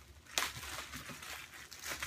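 Plastic packaging bag crinkling and rustling as a t-shirt is pulled out of it, in irregular bursts with a sharper crackle about half a second in.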